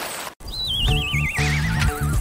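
Cartoon sound effect: a thin, wavering high tone that slides steadily down in pitch for about a second and a half, heard as a whinny-like trill. Children's music with a bass line comes in beneath it.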